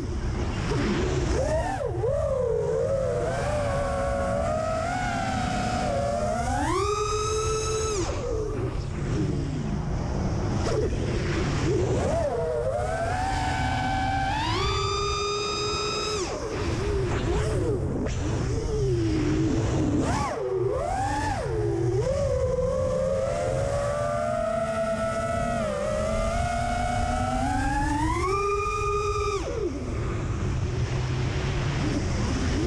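The Samguk 2306 2500kv brushless motors and propellers of a freestyle FPV quadcopter, heard from an onboard camera. Their whine rises and falls with throttle and climbs sharply in pitch on three throttle punches, about seven, fourteen and twenty-eight seconds in. Steady wind noise on the microphone runs underneath.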